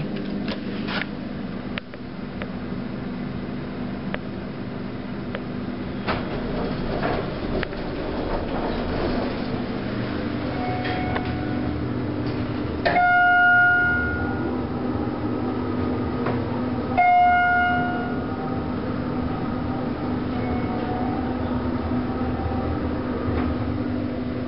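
Inside a 1990 Schindler hydraulic elevator car running down: a steady low hum, with a few sharp clicks near the start. Past the middle, two short chime tones sound about four seconds apart.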